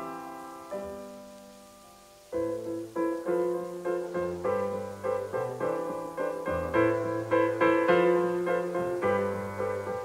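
Solo piano playing a song's introduction: a chord rings out and fades, then about two seconds in a steady rhythmic accompaniment begins, with chords over a moving bass line.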